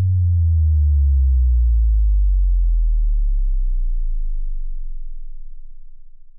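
Deep synthesized tone with a stack of overtones, starting abruptly and gliding slowly downward in pitch as it fades out over about six seconds: the sound of an animated end-card sting.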